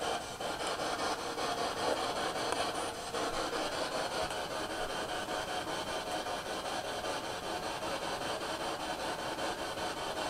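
Spirit box, a radio that scans through stations, sweeping without a break: a steady hiss of radio static with a slightly choppy flutter.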